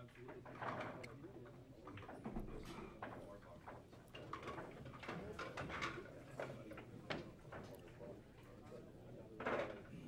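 Faint background talk of people in a bar room, with scattered sharp clicks and a louder voice near the end.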